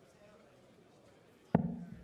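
Low arena hush, then one sharp thud about one and a half seconds in as a steel-tip dart lands in a Winmau Blade 6 bristle dartboard.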